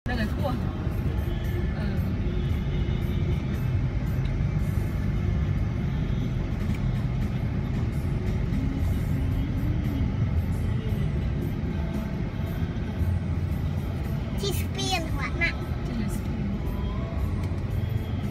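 Steady low rumble of a car's engine and tyres heard from inside the cabin in slow city traffic, with voices and music in the background. A rising and falling voice stands out briefly about three-quarters of the way through.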